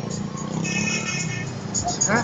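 Low, steady rumble of a vehicle engine idling in stopped traffic, with faint high tones around the middle.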